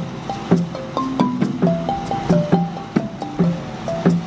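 Marimba played with mallets, a quick repeating melodic pattern of about four struck notes a second over lower ringing notes.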